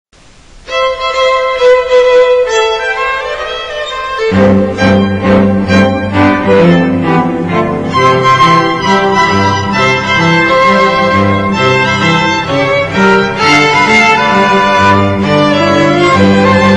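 Background string music led by a violin melody. Lower bowed strings come in about four seconds in.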